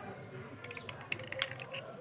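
A small blade scraping the softened surface of a wet yellow slate pencil, a quick run of fine crackly scrapes that thickens in the second half.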